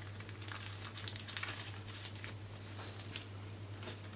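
Faint rustling of a paper packet and small clicks of piezo elements being handled on a bench, over a steady low hum.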